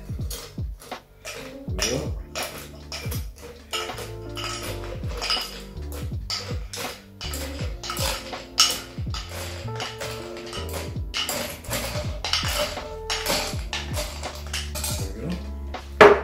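Ice cubes dropped one by one into a glass mixing glass, a long run of irregular clinks and knocks, over background music.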